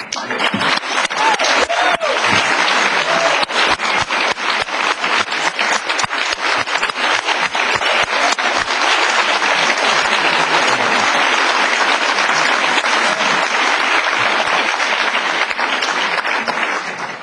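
A large audience applauding steadily, dense clapping throughout, with a few faint voices calling out in the first few seconds.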